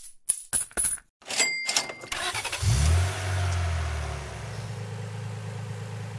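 Cartoon sound effects: coins clinking about four times, a short cash-register beep, then a small car engine starting up about two and a half seconds in and running, dropping slowly in level as the car pulls away.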